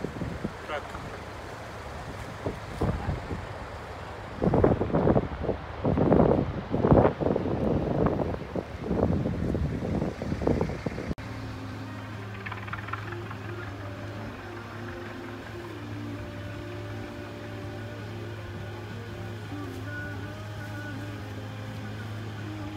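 People talking for about the first half, then, after a sudden cut, background music with steady held notes.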